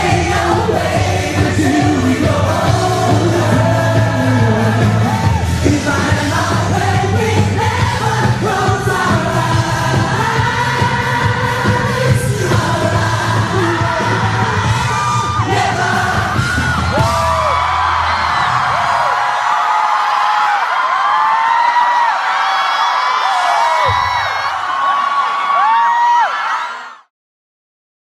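Male pop singer singing live into a handheld microphone over a band with a heavy bass line. About three-quarters of the way through the band drops out and a crowd screams and whoops, with one low thump near the end.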